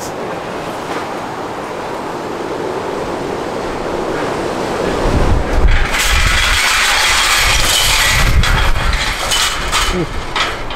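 A passing vehicle: a steady noise that builds slowly over the first few seconds, is loudest with a low rumble and a hiss from a little past halfway, and eases off near the end.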